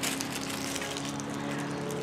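A steady faint hum made of several sustained tones over a light hiss, with one more tone joining about halfway through.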